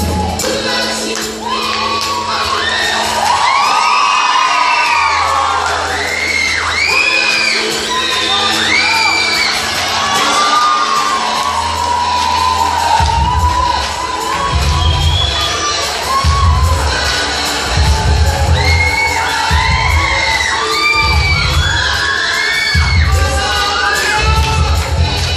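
Audience, mostly children, shrieking and cheering over recorded music; a steady bass beat comes in about halfway through.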